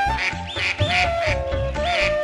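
Domestic ducks quacking repeatedly, several short calls a second, over background music with a held, gliding melody line.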